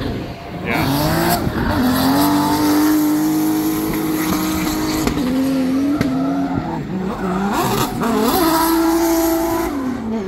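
Drift cars sliding past with engines held at high, steady revs and tires squealing. The revs climb about a second in, waver past the middle, and climb and hold again before dropping near the end.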